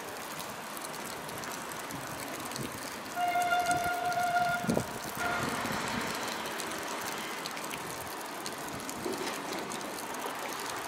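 A vehicle horn sounds one steady blast of about two seconds, a little after three seconds in, over a steady hiss of rain.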